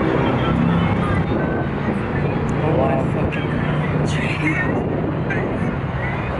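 Indistinct talking over a steady low hum, with a couple of brief voice sounds about three and four seconds in.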